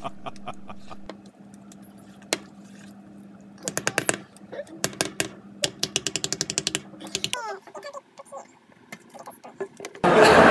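Wire whisk beating cake batter in a metal bowl, the wires ticking against the side of the bowl in quick runs of about eight strokes a second. A steady low hum runs underneath and stops about seven seconds in.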